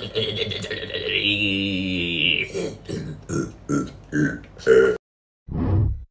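A man's voice making a long, low, wordless vocal sound, then a string of about six short choppy syllables, imitating a hand-drawn sound wave. The voice cuts off abruptly about five seconds in, and a brief short sound follows near the end.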